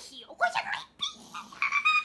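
A young woman's voice making high, squeaky vocal sounds in several short bursts, the last one held on a steady pitch. These are comic character-voice noises rather than ordinary words.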